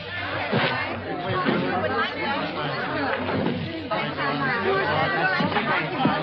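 A crowd talking over one another: an unbroken chatter of many voices.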